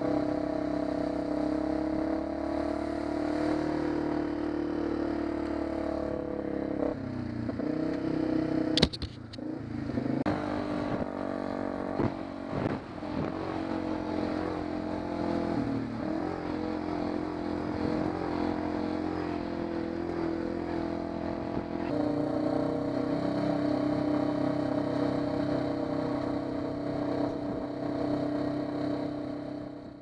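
A small off-road vehicle's engine running at a steady pitch while it is ridden over rough ground, with knocks and rattles. A sharp loud knock comes about nine seconds in, and the sound fades out at the end.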